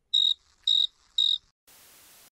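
Cricket-chirp sound effect: three short, high chirps about half a second apart in dead silence, the comic cue for an awkward silence. A faint hiss of video static comes in near the end.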